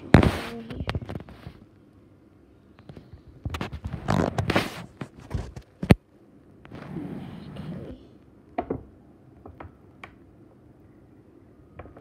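Handling noise close to the microphone: bursts of rubbing and rustling, one sharp click about six seconds in, and a few small ticks near the end.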